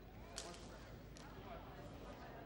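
Table tennis ball struck and bouncing during a rally: sharp clicks, the loudest about half a second in and a fainter one just past a second.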